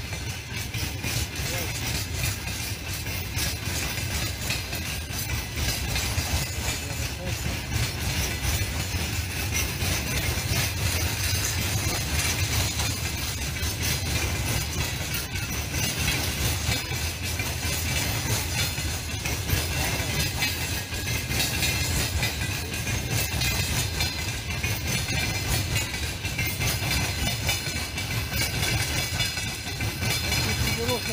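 Freight train's flatcars rolling past at steady speed: a continuous low rumble with wheels clattering over the rails.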